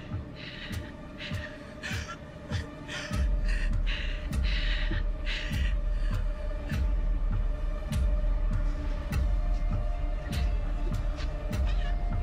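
Tense film score: a sustained droning tone, joined about three seconds in by a loud, low, heartbeat-like pulse that repeats steadily. Before the pulse comes in there are short breathy hisses.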